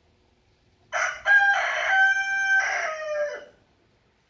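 A rooster crowing once, about a second in: one long call of some two and a half seconds whose pitch drops at the end.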